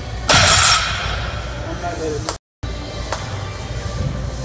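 Loaded barbell with black bumper plates set down on the floor at the end of a deadlift: one loud, clattering burst about a third of a second in, over steady background music. The sound cuts out completely for a moment a little past halfway.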